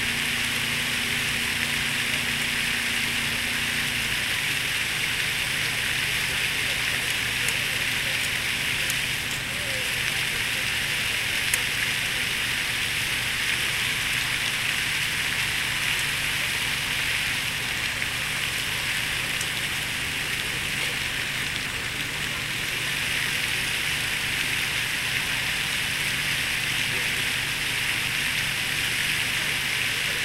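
Large park fountain's jets splashing into its basin: a steady hiss of falling water.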